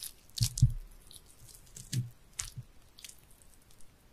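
Knife work on a raw sea bass on a cutting board: a handful of short cuts and knocks, the loudest about half a second in and a few more around two seconds in, then fainter ticks.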